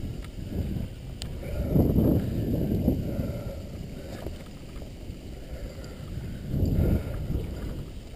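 Low rushing and rubbing noise on a body-worn action camera's microphone as a climber moves up the rock, swelling twice, with one sharp click about a second in.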